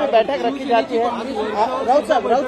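Speech only: several people talking at once around a press microphone scrum.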